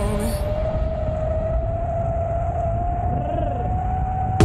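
Electric skateboard motors whining in one steady tone that slowly rises in pitch as the board gathers speed, over a low rumble of wheels on the path and wind.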